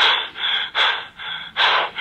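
A person breathing hard and fast, in quick gasping breaths, about two or three a second.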